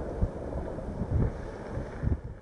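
Wind buffeting an outdoor microphone: an uneven low rumble with irregular gusts.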